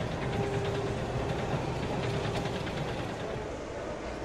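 Small FPV cinewhoop drone's motors and propellers whirring steadily, with a faint hum that shifts slightly in pitch.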